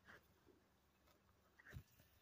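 Near silence with faint, soft sounds of a black calf grazing close by, its muzzle in the grass, and a brief low thump near the end.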